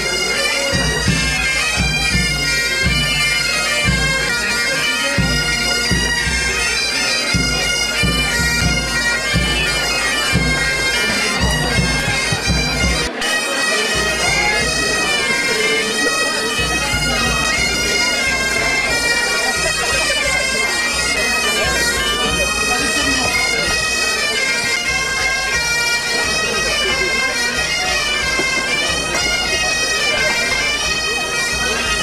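Breton biniou braz (three-drone bagpipe) playing a traditional tune together with a second woodwind, the melody running over the pipes' steady drone.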